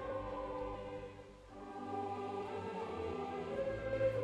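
A choir singing sustained chords, dipping in loudness about a second in and swelling back.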